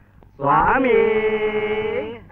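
A man chanting: after a short pause he slides up into one long, steady held note.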